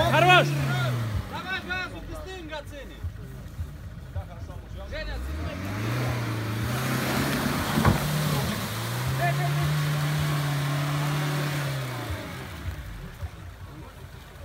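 Suzuki Jimny's petrol engine revving hard under load as it pushes through a muddy water ditch, with water and mud splashing. The revs rise briefly at the start, climb again about five seconds in and are held high for several seconds before dropping near the end, with a single knock about eight seconds in.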